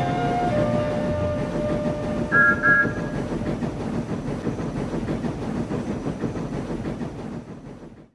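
Steam locomotive running with a rhythmic chuffing, giving two short whistle toots about two and a half seconds in, then fading away at the end.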